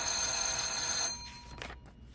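Electric school bell ringing, a harsh ring with high steady overtones, cutting off sharply about a second in.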